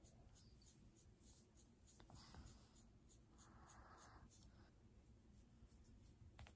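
Faint scratching strokes of a plastic comb and then fingertips working through a child's long hair and over the scalp, close to a microphone, with longer scrapes about two seconds in and again from about three to four seconds.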